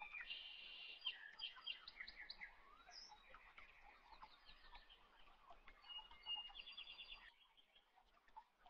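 Faint birds chirping in the background: a busy run of short high chirps and quick trills that thins out near the end.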